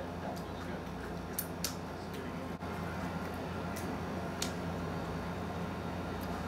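A few faint, sharp clicks of a person chewing a mouthful of taco, over a steady low room hum.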